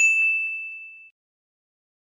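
A single bright ding, the notification-bell sound effect of a subscribe-button animation. It rings for about a second and fades away, with two faint clicks under it.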